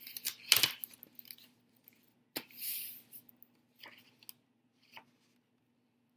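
Paper being handled: a paper-plate chart pressed down on a sheet of construction paper and then picked up, giving a sharp tap about half a second in, a short rustle a little past halfway, and a few faint ticks.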